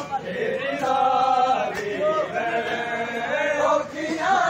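Crowd of men chanting a Shia noha (mourning lament) together, several voices holding long lines at once, with a few sharp slaps of matam chest-beating.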